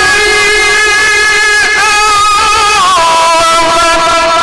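Quran recitation in the melodic mujawwad style: one man's voice holding long, ornamented notes into a microphone, stepping down in pitch about three seconds in.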